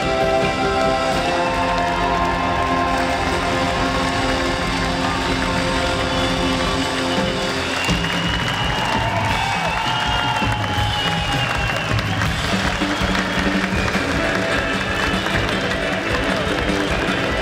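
Live band with a brass section playing loudly, holding a long sustained chord for the first half. From about halfway, crowd applause and cheering mix in with the music.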